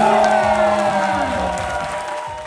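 Electronic dance-battle music on a held synth chord, mixed with a crowd cheering and shouting. Everything fades down over the last half second.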